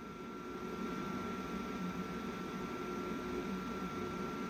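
Steady background hiss and low hum of the recording, with a faint, thin, steady whine above it. It grows slowly a little louder.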